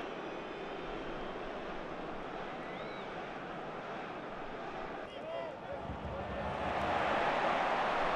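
Football stadium crowd noise: a steady hum of many voices with a few faint distant shouts, growing louder over the last two seconds.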